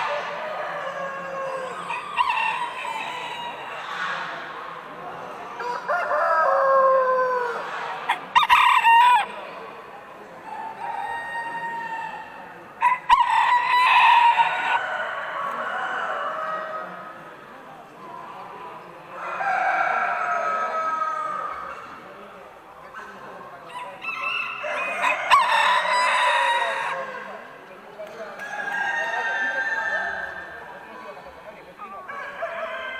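Roosters crowing again and again, about five crows each a second or two long, with some hen clucking in between.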